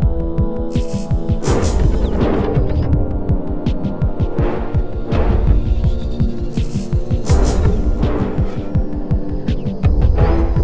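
Dark ambient drone soundtrack: a low throbbing hum under steady held tones, with swells of hissing noise rising and falling every second or two.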